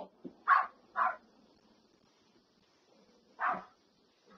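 A dog barking three times: two quick barks close together near the start, then a single bark near the end.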